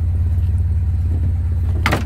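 1984 Volkswagen Transporter's 78 PS water-cooled flat-four engine idling steadily with an even low rumble. A brief sharp sound comes just before the end.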